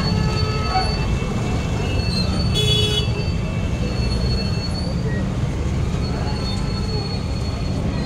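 Busy market-street ambience: a steady low rumble of traffic and crowd with indistinct voices in the background. A brief high-pitched toot sounds about two and a half seconds in.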